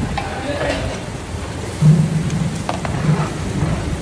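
Large pot of chicken curry on a wood fire being stirred with a long metal paddle: a steady sizzle of the bubbling gravy, with a few sharp knocks and scrapes of the paddle against the pot. About two seconds in comes a short low rumble, the loudest moment.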